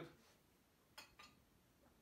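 Near silence: room tone, with a faint click about a second in and a weaker one just after.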